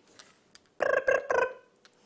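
A woman making a buzzing vocal noise in three quick pulses about a second in, an imitation of dragonfly wings that she likens to a 1980s ringtone.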